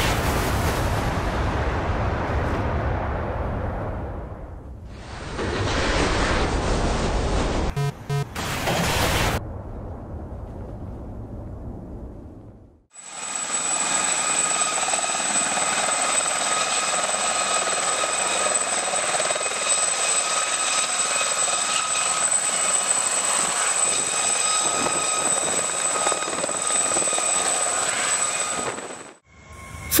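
A small turbine helicopter hovering low: a steady high turbine whine over the rotor noise, starting abruptly about 13 seconds in and cutting off just before the end. Before it come several seconds of loud rushing noise in separate segments, each cut off abruptly.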